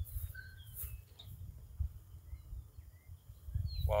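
Several faint, brief bird chirps over a low, gusty wind rumble on the microphone.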